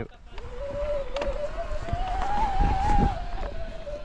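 A steady motor-like whine that climbs in pitch to a peak about two and a half seconds in and then falls back, over the low rumble of a mountain bike rolling on a dirt trail.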